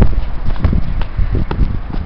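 Irregular knocks and scuffs from two boxers sparring on concrete, with sneaker footwork and gloved punches landing in an uneven series of short hits.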